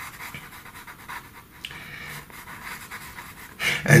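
Pastel pencil scratching on paper in quick, short shading strokes, a soft rhythmic rasp.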